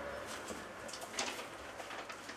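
Quiet room tone with faint rustling of papers and a few soft clicks about a second in.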